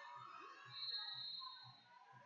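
A large sports hall's background: a whistle blows once, a high steady tone lasting most of a second, about two-thirds of a second in, over a low thud beating about two or three times a second and a faint murmur of voices.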